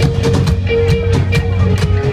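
Live band music played loud: a drum kit hit about four times a second over a steady bass line and sustained guitar notes.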